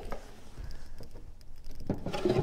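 Faint handling noise: a few light clicks and rustling as a person shifts on a wooden organ bench and reaches down to its storage drawer.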